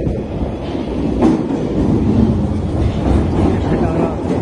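London Underground tube train running along the platform: a loud, steady rail rumble with a sharper clack about a second in.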